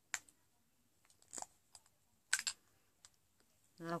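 Lipstick cases being handled: a handful of sharp, separate plastic clicks and taps, the loudest about two and a half seconds in.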